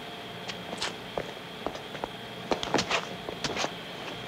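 Foley footsteps and scuffling performed for a fight scene: a scattering of light taps and knocks, busier in the second half, over a faint steady hiss and whine.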